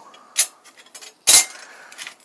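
Steel knife blanks clinking together as they are handled: a light click, then a louder clink with a brief metallic ring.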